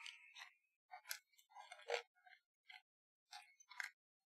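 Faint, scattered small clicks and light scrapes of small electronic parts and wires being handled at a bench, about ten short sounds with gaps between them.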